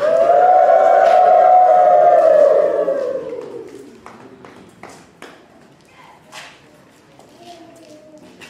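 A voice in one loud, long drawn-out call, held for about three seconds and then fading, followed by a few scattered knocks.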